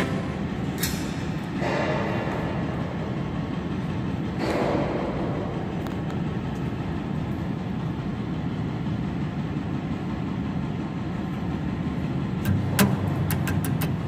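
Steady mechanical background hum of an electrical switchgear room, with a few sharp clicks near the end.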